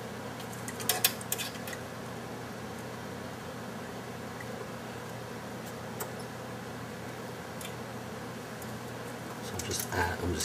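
Steady low hum and hiss of room tone, with a few light clicks about a second in and a faint tick or two later, from small handling sounds as the iron and desoldering braid are worked on the circuit board.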